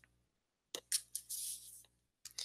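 Sheet of drawing paper and a plastic ruler being slid and shifted across a desk. It comes as about a second of short, scratchy rustles, starting a little under a second in.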